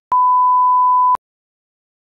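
A single steady, high-pitched electronic beep about a second long, switching on and off abruptly.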